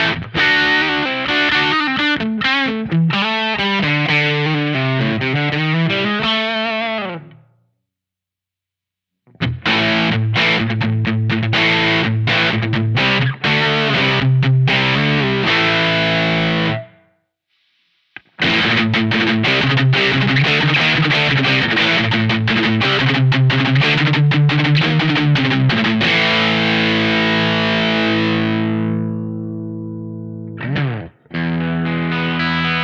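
Electric guitar played through a Ross Distortion pedal in its Germanium mode: three distorted passages split by two short silences, the first with bent, wavering notes. The last passage ends on held notes that ring out and fade.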